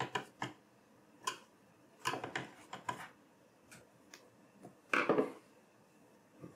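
Small screwdriver turning the screws that fix a 2.5-inch SSD into a metal 3.5-inch drive enclosure: scattered light clicks and short metal scrapes, with a longer, louder scrape about five seconds in.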